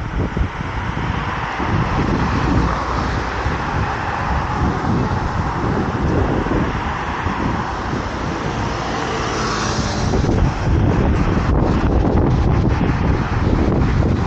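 Road traffic on a city street, cars driving past with tyre and engine noise, one passing close about nine to ten seconds in. Wind buffets the microphone.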